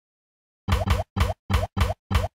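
Cartoon 'plop' sound effects from an animated intro: five quick pops about a quarter second apart, each with a short rising pitch, starting under a second in.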